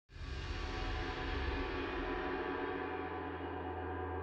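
Soft opening of background music: one sustained ringing tone with many overtones, holding steady.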